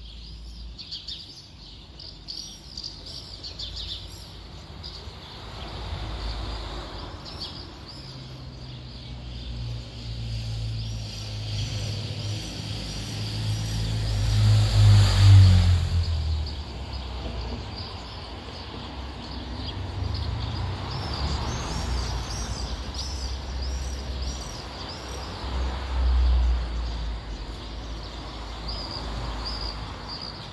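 A vehicle passes by, swelling to its loudest about halfway through and then fading, with a second, quieter pass later. Small birds chirp repeatedly at a high pitch throughout.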